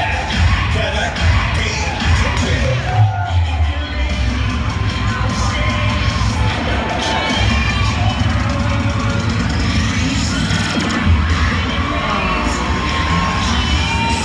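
Cheerleading routine music played loud over an arena sound system, with heavy bass throughout. The crowd cheers and shouts over it.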